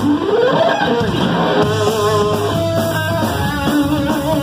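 Lead electric guitar in a live neo-classical metal instrumental with band backing: the lead line glides up in pitch over the first second, then settles into held notes with vibrato over bass and drums.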